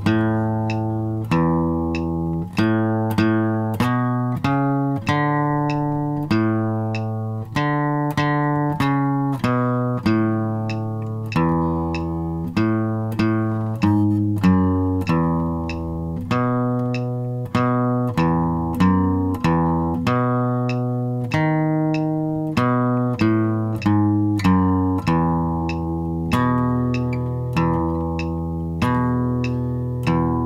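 Steel-string acoustic guitar played with a pick at a slow, even tempo in a country boom-chicka pattern: single bass notes alternate with strums, and short walking bass runs lead into each chord change. It moves through A, D, A, then changes key into E and B7.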